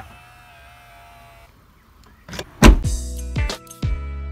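Hyundai IONIQ electric power side mirror motor whining faintly for about a second and a half as the mirror unfolds, then loud music with strong bass notes starts a little over two seconds in.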